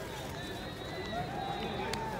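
Voices calling out across a baseball field in drawn-out shouts, over steady outdoor background noise, with a single faint click near the end.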